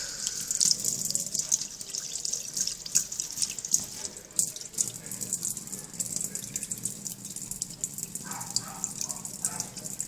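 Kitchen tap running steadily, the stream splashing over a fingertip held under it and into a stainless steel sink.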